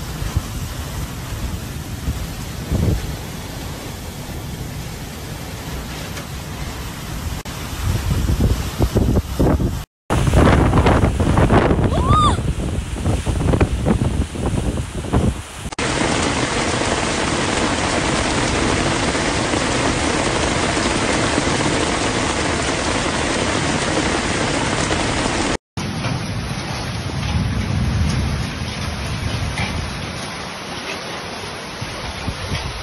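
Thunderstorm of heavy rain and strong wind: wind buffeting the microphone and rain falling, then, about sixteen seconds in, a steady hiss of pouring rain. The sound breaks off twice where clips change.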